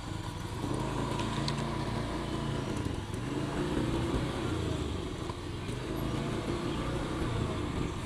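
Motorcycle engine running steadily while riding along at a cruise, its pitch wavering a little.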